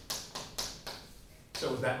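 Chalk drawing on a chalkboard: a run of short strokes, about four a second, as lines of a diagram go down. A voice starts near the end.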